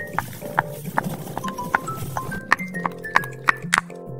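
A small metal spoon clicking and clinking against a tiny glass bowl as it stirs flour and seasoning: many short, irregular clicks over background music.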